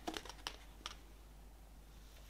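Pages of a glossy album booklet being turned and handled, with a few short paper ticks and rustles in the first second.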